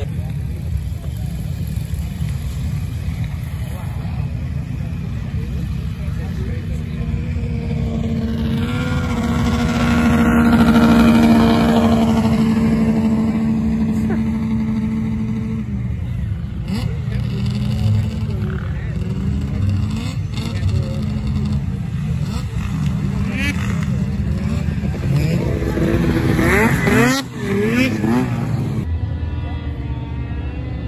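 Vehicle engines running over a steady low rumble. One engine holds a steady pitch and grows louder to a peak a little after ten seconds, then fades by about sixteen seconds. Near the end, engines rev in quick rising and falling sweeps.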